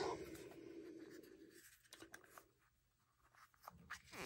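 Near silence, with a few faint clicks from a small clear plastic bead container being handled and its lid opened.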